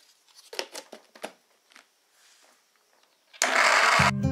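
A few light knocks and clicks of a plastic blender jar being handled. Then, near the end, a Philips Walita blender's motor starts up loud to blend eggs, oil, carrots and sugar, and is cut off abruptly.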